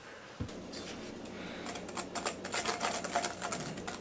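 Metal spoon stirring thickened maple syrup in a stainless steel bowl, a quick, uneven run of clicks and taps against the bowl. A steady low hum starts about half a second in and runs under it.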